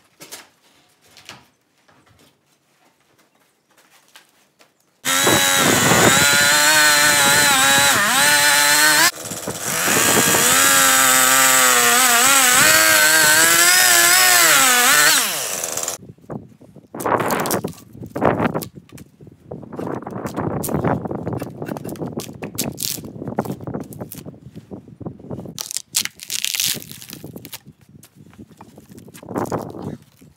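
Gas chainsaw cutting lengthwise through an ash log, running at full throttle in two stretches of about four and six seconds, with a short drop in between and the pitch wavering under load. Light knocks come before it, and after the saw stops there is irregular rasping and scraping as bark is torn off the sawn log by hand.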